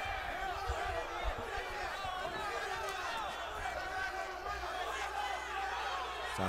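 Arena crowd, many voices shouting and calling out over one another, with a few dull low thuds in the first second or so.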